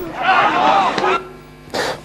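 Raised voices in the pitch-side sound of a football match, high-pitched and lasting about a second, followed by a quieter stretch with a faint steady tone.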